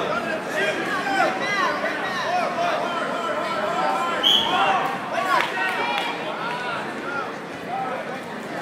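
Spectators' voices in a gym, several people talking and calling out over one another. A brief, high squeak cuts through about four seconds in.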